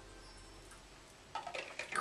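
Quiet room tone while a drink is taken from a water bottle, then a few short handling sounds from the bottle and its lid in the last half second.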